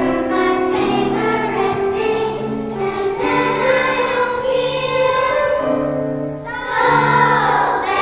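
Children's choir singing with piano accompaniment.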